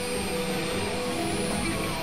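Dense layered mix of several music tracks playing at once, heard as a steady noisy wash like a jet engine, with a few held tones running through it.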